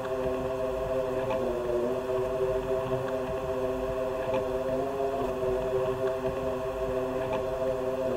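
A steady, low droning tone with several pitches held together, in a vocal break of a rap track. It shifts slightly in pitch about a second and a half in and again near five seconds, with a faint low rumble beneath.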